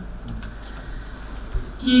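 A pause in a woman's speech at a microphone: steady low room hum with a few faint clicks, and her voice starting again just before the end.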